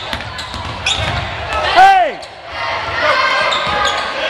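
Basketball dribbling on a hardwood gym floor, with spectators' voices echoing in the gym. About halfway through comes a loud, short squeal that rises and falls in pitch.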